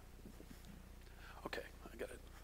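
Faint, quiet talking, with one louder snatch of voice about one and a half seconds in, over a steady low hum.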